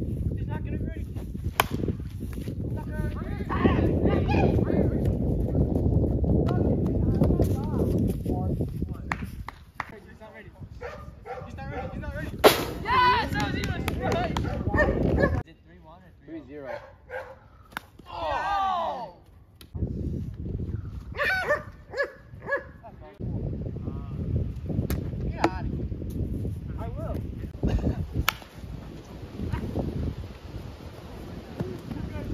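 Wind buffeting the microphone in long gusts, broken by a few sharp cracks of a plastic wiffle ball bat hitting the ball. Scattered high calls and shouts from players come through in the quieter middle stretch.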